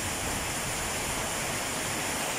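Heavy rain pouring down hard on the street and pavement: a steady, even hiss.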